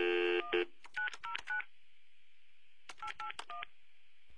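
Telephone keypad dialing tones: a steady tone of about half a second, then two quick runs of short beeps, about four in each run, some two seconds apart.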